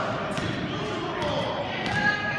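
A basketball bouncing a few times at uneven intervals on a gym's wooden floor during play, with spectators' voices echoing in the hall.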